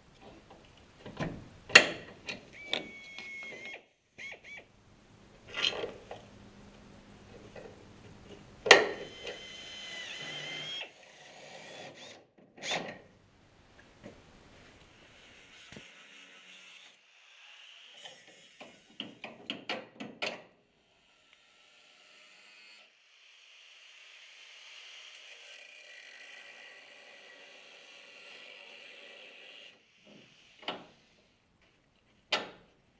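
Sharp metal clanks and knocks, the loudest about two and nine seconds in, then an angle grinder cutting through the steel suspension mounts in several runs, the longest a steady one over the last seven seconds.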